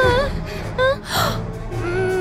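Young women's voices gasping in alarm, several short startled gasps in the first second or so, over background music.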